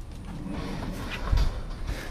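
Rear door of an enclosed cargo trailer being opened by hand: scattered metal clicks and rattles, with a heavy low thump about a second and a half in.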